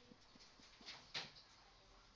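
Mostly near silence, with a few short, faint scrapes of a marker writing on a whiteboard about a second in; the loudest stroke comes just past the middle.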